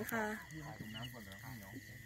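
Speech: a short spoken reply at the start, then quieter talk, over a steady high-pitched background tone with faint small chirps.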